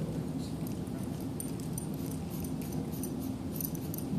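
Quiet room hum with faint scattered clicks and rustles of handling, as the microphone is taken off its stand.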